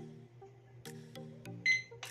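A single short, high electronic beep from a wooden LED digital alarm clock about one and a half seconds in, as its Set button is held down and the clock enters its date-and-time setting mode. Background music plays underneath.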